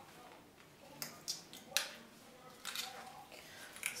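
Metal buckles of a belt clicking and clinking as it is fastened at the waist, with faint handling rustle. A few sharp clicks, the loudest about a second in and just before the two-second mark.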